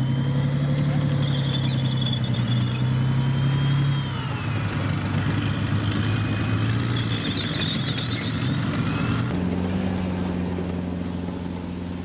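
Tracked armoured vehicle's engine running steadily, with a high whine above it that dips and rises in pitch. The engine note changes about four seconds in and again at about nine seconds.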